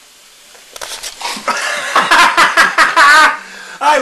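Loud burst of excited laughing and exclaiming from men's voices, mixed with knocks and handling noise, starting about a second in and stopping just before the end.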